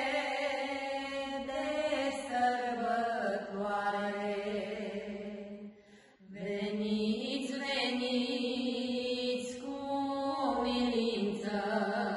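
Slow hymn in long held, chant-like sung notes. The music breaks off briefly about halfway through, then resumes.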